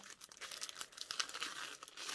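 Clear plastic bag crinkling softly and irregularly as hands handle it and pull at its opening.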